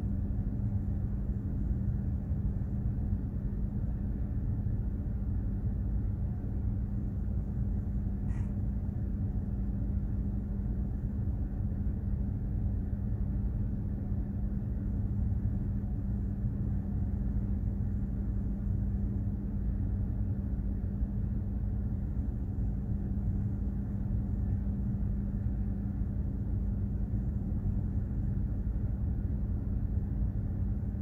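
Container ship under way: a steady low rumble of its engine and machinery, with a constant hum riding on it.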